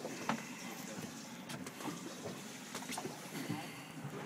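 Steady wash of water and wind around a small boat at sea, with scattered light knocks and clicks.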